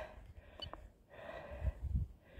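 Faint breathing close to the microphone, with a brief high tone about half a second in and a few low thumps near the end.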